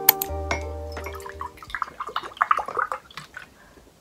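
Background music that stops about a second and a half in, then Milkis, a carbonated milk soda, pouring from a plastic bottle into a cup.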